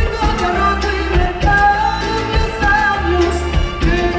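Live band playing a dance number with a woman singing lead over keyboards, bass and drums with a steady beat.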